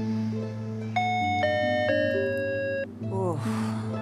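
Soft meditative background music of sustained chime-like notes that stack up about a second in and stop together near three seconds, followed by a quick falling glide.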